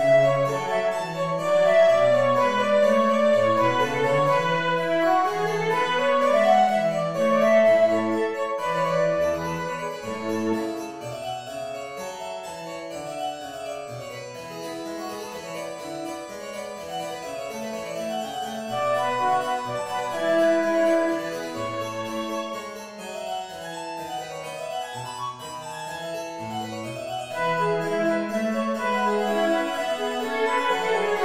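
Baroque-style chamber sonata movement in A major at a quick tempo, for flute, violin, harpsichord and cello. All four play together at first, then the harpsichord runs on in quick notes with only the bass line under it. The flute and violin come back in loudly near the end.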